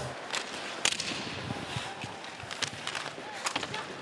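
Ice hockey arena ambience: a steady crowd hum broken by sharp clacks of sticks and puck and the scrape of skates on the ice, the loudest clack a little under a second in.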